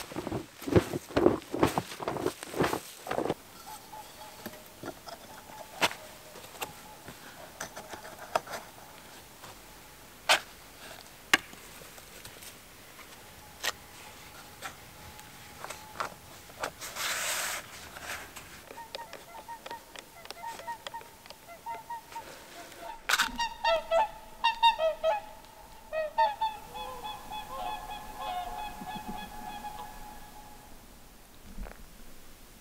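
Swans calling: a series of short, repeated honks over the second half, loudest in the last seven seconds, with scattered knocks and handling sounds before them.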